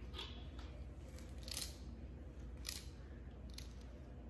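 Handling noise close to the microphone: a few short, crisp scratchy rustles, about a second apart, over a low steady hum.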